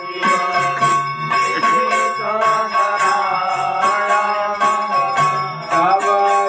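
Temple bells ringing continuously in a rapid, even rhythm during an arati service, with a sustained ringing tone, and voices singing over the bells from about two seconds in.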